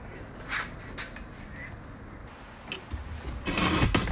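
Faint rubbing and handling of a car seat cushion and its cover, with a couple of short scuffs. Louder low knocking and rumbling handling noise near the end.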